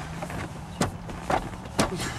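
Three short sharp clicks or knocks as clumsy gloved hands fumble at a car's plastic glove box, over a steady low hum.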